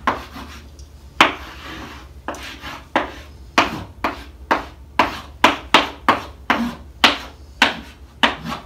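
Chalk writing on a chalkboard: a string of sharp taps and short scrapes, one for each stroke of the letters, coming irregularly about two a second.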